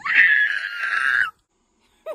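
A woman's high-pitched excited squeal, held for about a second and a quarter, then cut off abruptly.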